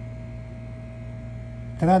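Steady electrical hum, low with a fainter higher tone held above it, in a pause between words.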